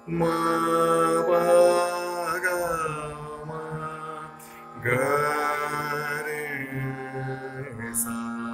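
Male voice singing Hindustani classical Raag Bihag in slow vilambit style: two long phrases of held, sliding notes, the second beginning about five seconds in, over a steady drone.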